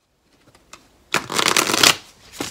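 A deck of tarot cards being shuffled by hand: a few faint card clicks, then one loud rush of cards riffling together about a second in that lasts just under a second.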